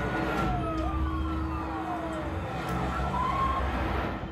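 Film soundtrack played through a home cinema surround system and heard in the room: a car's low engine rumble with siren wails gliding up and down over it.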